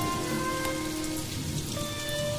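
Steady rain falling, with a few soft held music notes beneath it that fade out partway through.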